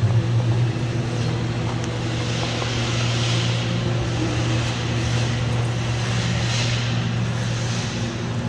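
Steady low mechanical hum with a soft hiss that swells and fades in the middle.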